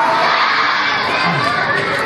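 A crowd of schoolchildren shouting together in answer to a call of "siap?" ("ready?"). Many voices overlap without a break.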